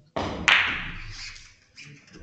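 A sudden clatter, then a single sharp, loud knock about half a second in that rings and dies away over about a second.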